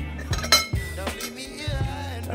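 Background music with a steady bass line, over which a metal fork and spoon clink against a glazed ceramic plate while stirring fried instant noodles, with one sharp clink about half a second in.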